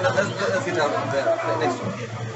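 Voices talking over a steady low hum.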